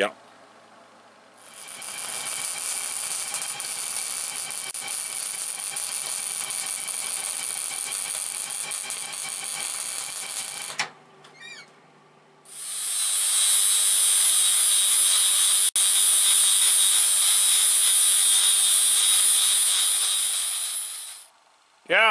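Angle grinder running and grinding bevels onto the edges of small steel pieces as weld preparation, in two long runs of about nine seconds each with a short pause between; the second run is louder.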